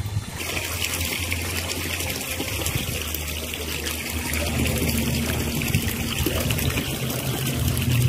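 Water running steadily, getting louder about half a second in, with a low steady hum beneath it.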